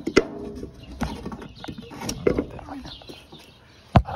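Scattered clicks and knocks of parts being handled at the oil filter housing of a PACCAR MX-13 diesel engine, the sharpest one near the end. Birds chirp faintly in the background.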